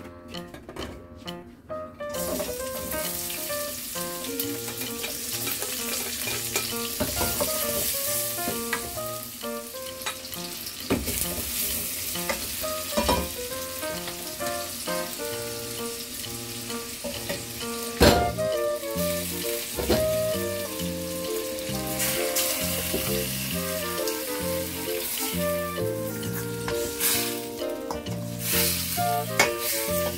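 Chopped garlic and onion sizzling in hot oil in a stainless steel pot, starting about two seconds in, then pork pieces frying as they are added and stirred with a spoon. A sharp knock sounds about halfway through, and background music plays throughout.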